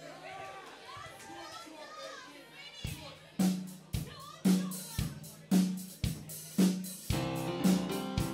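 Audience chatter, then from about three seconds in a steady drum beat of about two hits a second starts a live band's song. The rest of the band with guitar and keyboard joins near the end.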